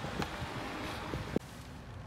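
Outdoor wind noise and handling rustle while someone climbs into a BMW 3 Series (F30), then a car door shutting with a single knock about one and a half seconds in, after which the outside noise is cut off and it goes quieter.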